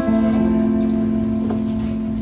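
Guitar's last chord struck once and left to ring out, fading slowly as the song ends.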